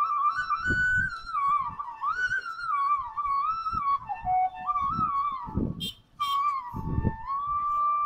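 Recorded bansuri flute melody playing from a small speaker set into a walkway canopy. The notes slide and are held, ending on a long steady note, with a few short low rumbles and a brief dropout about six seconds in.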